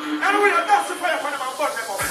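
A voice calls out over a club mix during a breakdown, with the bass and kick dropped out and only higher synth and noise layers underneath.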